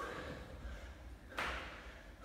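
A man doing a jumping burpee on a rubber gym floor: a short knock at the start as his hands meet the floor, then a louder noisy burst about a second and a half in as he springs up into the jump.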